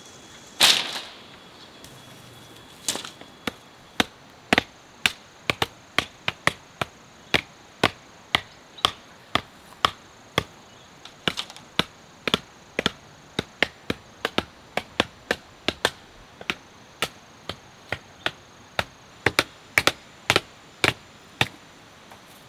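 Repeated sharp strikes of a tool on bamboo and wood, about two a second and fairly even, starting about three seconds in, with one louder single knock just before the first second.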